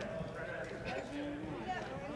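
Gymnasium crowd and player voices chattering, mixed with light knocks of shoes and ball on the hardwood court, a few sharper ones about a second in.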